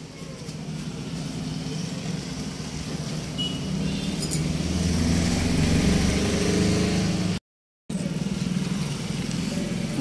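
Motorcycle engines running past on the road, a steady low hum that grows louder to its peak about two-thirds of the way through. The sound cuts out completely for about half a second, then the engine hum resumes more softly.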